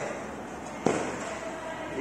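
A single sharp knock a little less than a second in, with a short echo trailing after it, over the steady background hum of a large hall.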